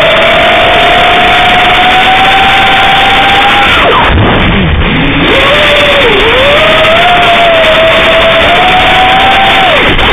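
FPV quadcopter's brushless motors whining, picked up by the onboard camera's microphone. The pitch climbs slowly, falls sharply about four seconds in as the throttle is cut, then rises again, dips briefly, and drops once more near the end.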